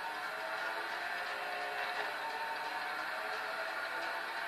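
Racing-game engine sound played through a smartphone's small speaker: a car engine held at a steady pitch.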